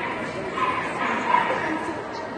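A dog giving two short, high barks over the murmur of a crowd in a large hall.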